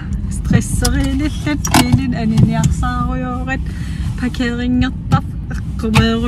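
Steady low rumble of a car's engine and road noise, heard inside the cabin, under people talking.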